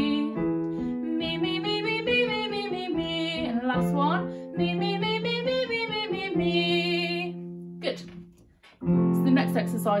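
A woman singing a vocal warm-up on 'mee', up five notes of the scale and back down, twice, over sustained chords on a digital piano. A brief pause comes before a new piano chord near the end.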